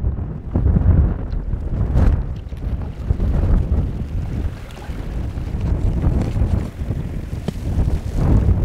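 Gusty wind buffeting the microphone: a low, rumbling rush that rises and falls with each gust.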